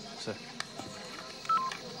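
Mobile phone's two-note electronic beep, a short higher tone and then a lower one, about one and a half seconds in, sounding as the call is ended.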